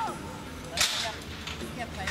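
A single sharp, slap-like crack about a second in, short and the loudest sound here, against the outdoor noise of a football pitch. A player's shout trails off at the very start.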